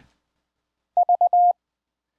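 Morse code (CW) audio tone from the other ham radio operator's station, relayed over the internet: a steady medium-pitched beep keyed about a second in as four short dits followed by one longer dah.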